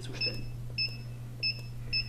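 Button beeps from the keypad of a PCE-MSR 150 magnetic stirrer: four short, high electronic beeps about half a second apart, each one confirming a press of the plus or minus button that steps the stirring speed. A steady low hum runs underneath.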